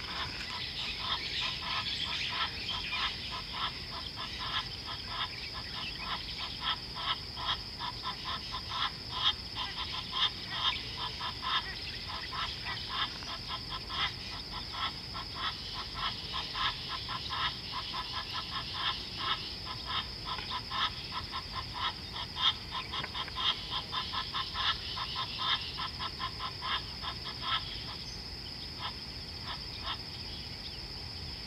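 Rapid, rhythmic animal calls, several short pulses a second, over a steady high-pitched insect drone. The pulsed calls stop near the end.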